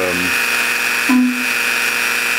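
Dremel rotary tool spinning a cutoff wheel at high speed with a steady high whine, with the Sherline lathe's spindle running at the same time; the wheel is running free, not yet brought into the steel rod.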